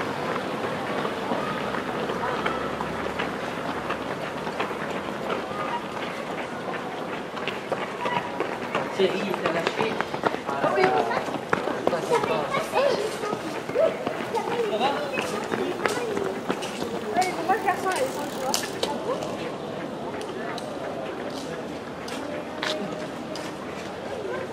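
Footsteps of many runners passing on a paved street, a continuous patter of shoe strikes. Indistinct voices chatter over it through the middle.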